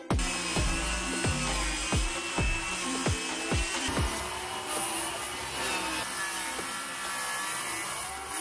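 Circular saw running and cutting through a sheet of plywood, a steady whine, with background music and a regular beat laid over it.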